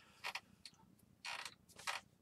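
A few faint creaks and clicks from a chair as the seated man shifts his weight.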